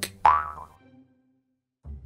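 A cartoon 'boing' sound effect: a springy twang that starts suddenly and dies away within about half a second. Near the end a low, soft musical tone begins.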